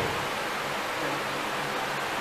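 Steady, even hiss of room noise in a pause between spoken phrases.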